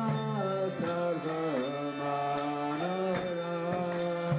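Devotional kirtan: a voice singing a sliding melody over a steady drone, with small hand cymbals struck about twice a second.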